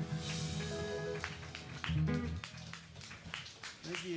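Live band with electric bass and electric guitar playing the final notes of a song, which stop about two and a half seconds in, followed by a few short clicks.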